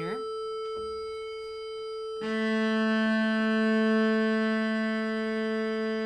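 An electronic drone holds a steady A, and from about two seconds in, the cello's open A string, an octave below it, is bowed in one long sustained note against the drone to check its tuning after tightening with the fine tuner; the string now sits close enough to the drone to be called good enough.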